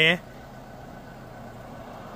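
A word of speech cut short at the start, then a steady faint hum of vehicle engines by the highway.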